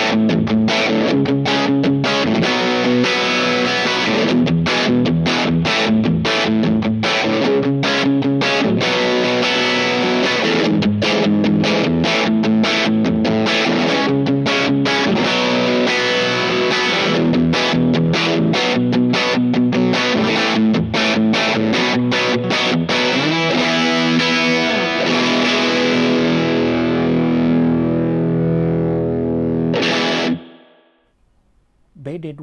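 Electric guitar, a Squier Telecaster, played through a Boss BD-2 Blues Driver overdrive pedal: a continuous overdriven riff of rhythmic chord and note changes. Near the end it settles on a chord left to ring and fade for a few seconds.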